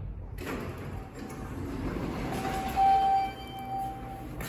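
Traction elevator arriving at the lobby, its doors sliding open with a low rumble. A steady electronic tone sounds for about a second and a half, loudest about three seconds in.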